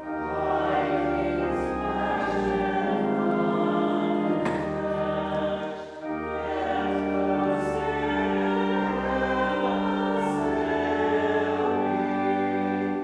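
A congregation singing a hymn to organ accompaniment, in sung phrases with a short break for breath about six seconds in.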